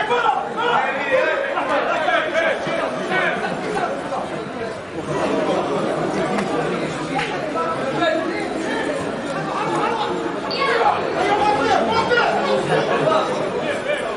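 Many overlapping voices of spectators chattering and calling out at once, with no single voice standing clear.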